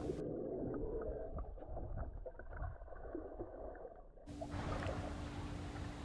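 Muffled underwater noise from a camera held below the surface while a boat hull is scrubbed clean of algae. About four seconds in it changes to a boat's engine running with a steady low hum.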